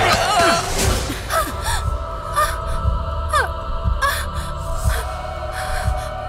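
Tense film background score with a sustained drone and low pulses, over short, sharp gasping breaths that recur every second or so. The first second is louder and noisier.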